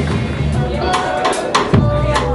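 Live electric blues-rock trio music: a held guitar chord dies away, then the drum kit plays a few sharp hits and the bass slides down before the band comes back in.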